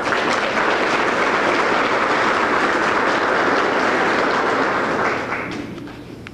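Audience applauding, dying away about five seconds in.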